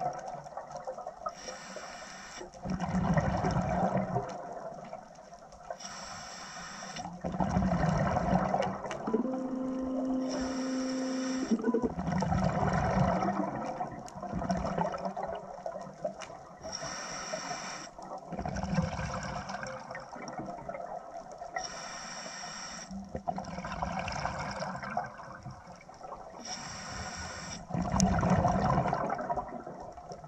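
Scuba diver breathing through a regulator underwater: a hissing inhale through the regulator, then a louder burble of exhaled bubbles, repeating about every five seconds.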